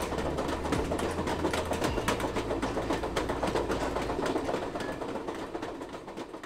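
A train rolling along the rails: a steady low engine hum under dense, irregular clattering, fading out near the end.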